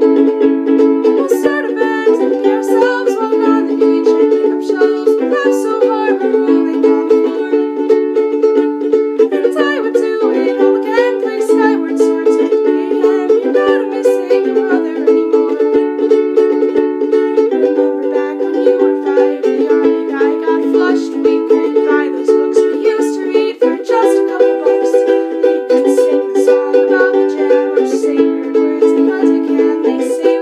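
Ukulele strummed in a steady rhythm, playing chords that change every couple of seconds.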